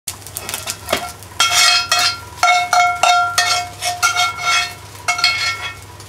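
A long metal spoon scraping and knocking against a metal frying pan while food is scooped out of it, about ten strokes, each leaving a short metallic ring from the pan.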